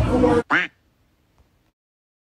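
Loud party music and chatter cut off abruptly about half a second in. Right after comes one short pitched squawk whose pitch arches up and down, laid on as a comic sound effect over an edit.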